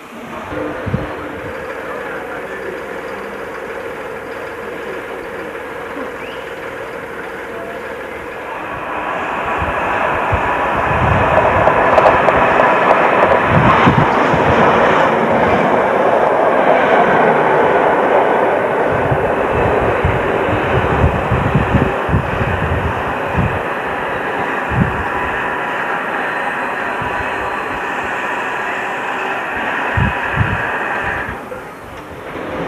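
A train passing close along the platform: its sound swells to its loudest about halfway through, with a run of wheel knocks over the rail joints, then eases off. Before it comes, a steadier running sound with a faint held tone.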